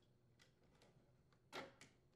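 Near silence broken about one and a half seconds in by a faint plastic click and a smaller second click: an oven control wire harness connector being pulled apart.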